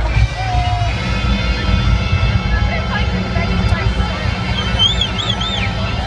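Large crowd cheering and shouting over music, with a heavy low rumble throughout; a high, wavering scream rises about five seconds in.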